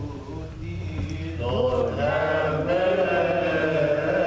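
Voices singing Coptic Orthodox liturgical chant, the chant swelling louder and fuller about a second and a half in.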